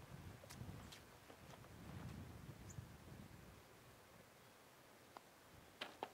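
Near silence outdoors: a faint low rumble in the first few seconds, then a couple of faint single clicks near the end.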